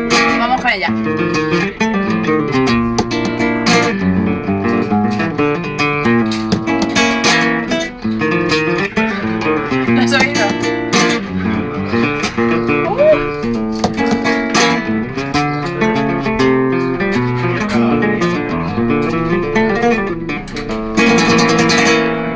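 Flamenco guitar played in bulerías style: strummed chords with sharp strokes, mixed with picked passages, in a continuous lively rhythm.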